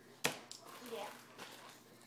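A single sharp click about a quarter of a second in, followed by a short spoken "yeah".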